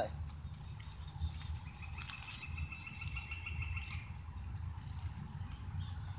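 Steady high-pitched insect chorus, cricket-like, with a fainter rapid ticking trill that joins it for a couple of seconds from about two seconds in, over a low rumble.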